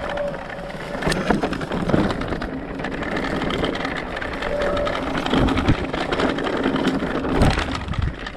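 Electric mountain bike rolling over a rough grassy and stony trail: tyres crunching and the bike rattling with many small knocks, with a few heavier thumps as it hits bumps.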